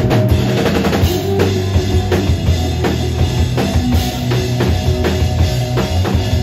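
A live rock band playing: a drum kit keeps a steady beat over electric bass and guitar.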